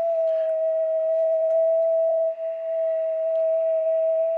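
Steady beat-note tone from an Elecraft KX3 receiver tuned to 28.4 MHz, picking up the carrier of a Heathkit VF-1 VFO. It shows the VFO is putting out a signal on the 10-meter band. The tone dips briefly and drops slightly in pitch about two seconds in.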